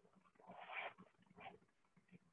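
Near silence: faint room tone with two brief, faint sounds, a longer one about half a second in and a short one about a second and a half in.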